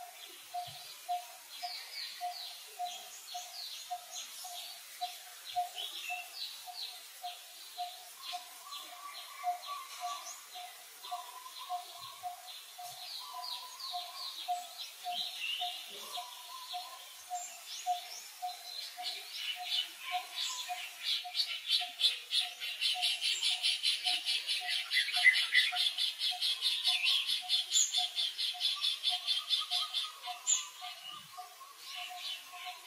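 Outdoor birdsong: a low single note repeats steadily about twice a second over scattered short, high chirps. From about two-thirds of the way in, a dense, rapid chattering call joins and is the loudest sound.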